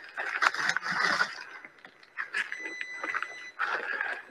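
A short high electronic beep lasting about a second, starting about two and a half seconds in, over irregular rustling and knocking.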